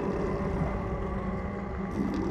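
Film sound effects of churning, splashing bog water with a steady low rumble as rocks rise up out of it.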